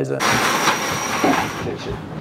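Loud, even rushing hiss of an IMOCA 60 racing yacht under way, heard inside its cabin, with a steady high whine over it; it stops shortly before the end.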